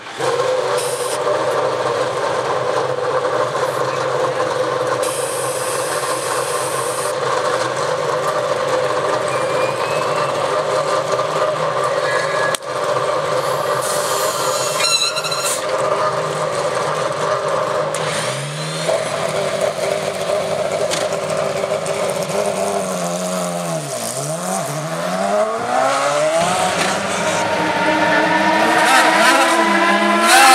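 An IndyCar's Honda V8 racing engine running at a steady idle in pit lane, starting abruptly at the opening. In the second half the pitch swings down and up several times, and it climbs near the end.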